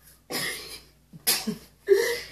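Three short breathy bursts of a person's voice, the first about a third of a second in, the second about a second and a quarter in and the third near the end.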